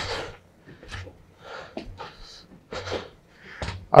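A man breathing hard from the effort of climbing a stair-climbing machine two steps at a time, in short, irregular puffs of breath about every half second to a second.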